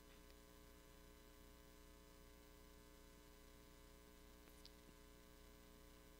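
Near silence with a faint, steady electrical mains hum.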